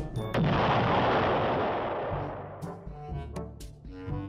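A single sharp blast about a third of a second in, dying away over about two seconds: a tripod-mounted military weapon blowing apart as it fires its first round.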